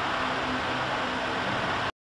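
Steady machine hum and hiss of a CNC metal engraving machine running, with a faint low drone, cutting off abruptly just before the end.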